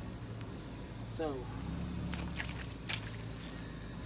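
A steady low hum with a few light clicks and footsteps as someone moves around.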